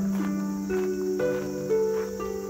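Background music: a gentle melody of held notes that changes pitch about twice a second over a steady low note.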